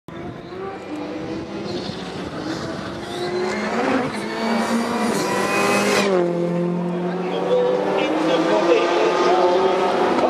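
Racing car engines at high revs. One engine's pitch climbs and grows louder for the first six seconds and then cuts off sharply. After that several engines are heard running together, rising in pitch again about eight seconds in.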